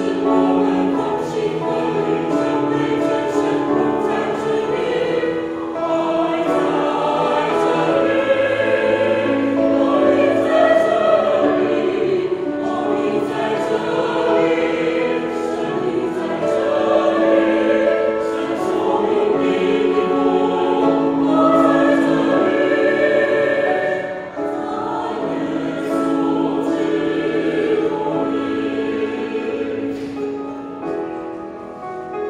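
A small mixed choir singing a hymn in parts, with sustained phrases and a short break between lines about three-quarters of the way through.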